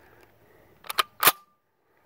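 The bolt of a Romanian SKS rifle is released and slams forward, chambering a round from its freshly loaded magazine. It makes three sharp metallic clacks about a second in, close together, with a brief metallic ring after them.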